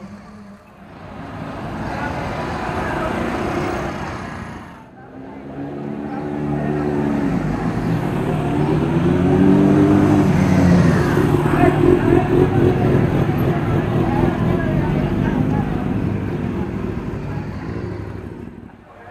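Several motorcycles riding off past at low speed one after another, their engines running and revving, rising in pitch and loudest about halfway through, then fading near the end.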